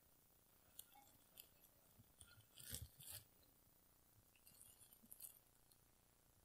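Near silence with a few faint crunches and clicks of loose compost soil being handled, the loudest about three seconds in.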